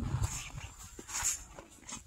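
A Murray Grey bull close by making soft, low vocal sounds that fade away toward the end, with two short hissy puffs between them.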